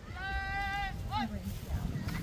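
A young football player's high shouted snap count: one long held call, then a short sharp shout as the ball is snapped.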